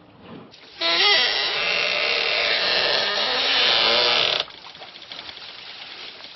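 Wooden lever press for handmade paper creaking and grinding under load as its log beam is pulled down. The noise starts about a second in and cuts off abruptly some three and a half seconds later.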